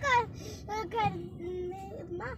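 A child's voice in short sing-song phrases, one note held steady near the end, over the low hum of a car cabin.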